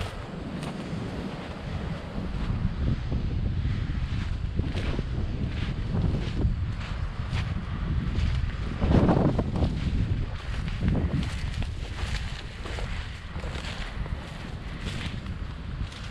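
Wind rumbling on the microphone, swelling louder about nine seconds in, over steady footsteps crunching through snow and dry leaves.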